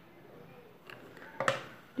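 Faint handling noises of hands working a ribbon onto a craft piece: a few soft clicks, then one sharper short knock about one and a half seconds in.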